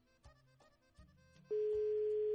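Soft background music with separate notes, then about halfway through a loud, steady, single-pitch telephone tone comes in over the phone line and holds for about a second. It is the ring heard down the line while the dialled number goes unanswered.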